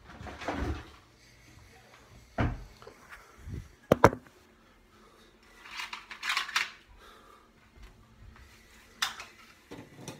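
Kitchen handling sounds from a Ninja blender being loaded before it is switched on. There are a few dull knocks and a sharp double click about four seconds in, which is the loudest sound. A short rustle follows around six seconds in and another click comes near the end. There is no motor sound.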